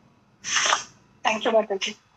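A person's voice: a short, sharp hissing burst about half a second in, followed by a brief spoken phrase.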